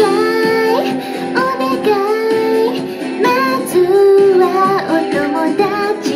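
A young woman singing a pop song into a handheld karaoke microphone, her voice carried over a backing track.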